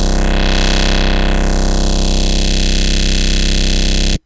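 Sustained, buzzy synthesizer drone: a vocoder carrier patch built in Ableton's Operator from square waves, with saturation and drive. It holds one steady note while a narrow EQ cut sweeps up to the top of its range in about the first second, then glides slowly back down, shifting the tone.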